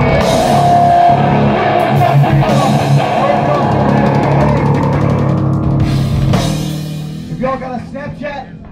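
Live rock band playing a short, loud burst with drum kit, cymbals, electric guitar and bass holding a chord. It cuts off about six seconds in and rings down.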